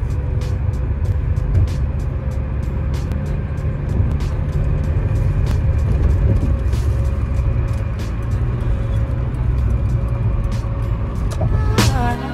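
Car cabin noise at highway speed: a steady low road and engine rumble, with music playing over it.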